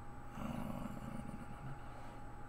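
A short breathy sigh from a person close to a headset microphone, lasting about a second and starting a moment in, over a faint steady electrical hum.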